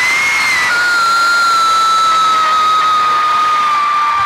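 Arena crowd of fans screaming and cheering, with one high-pitched scream held loud over the crowd for over three seconds, sinking slowly in pitch.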